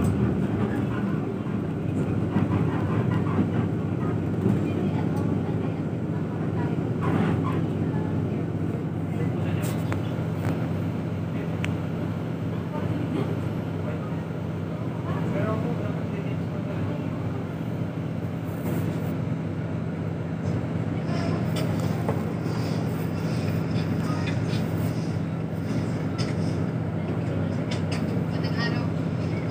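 Interior of a city bus: the engine's steady low drone and road noise filling the passenger cabin, with occasional light rattles and clicks.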